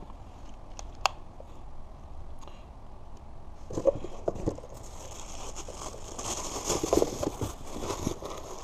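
Plastic packaging bags and cardboard rustling and crinkling as hands rummage through a box of parts, with a single sharp click about a second in. The rustling starts about four seconds in and grows busier toward the end.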